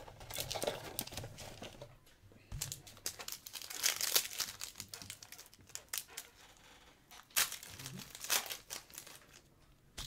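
Wrapper of a 2013 Panini Elite basketball card pack being torn open and crinkled by hand, in irregular bursts of crackling, the loudest about four seconds in and again a little after seven seconds.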